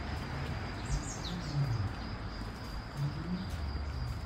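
Wooded outdoor ambience: a bird gives a short chirp that falls in pitch about a second in. Under it runs a steady, high insect trill and a low rumble.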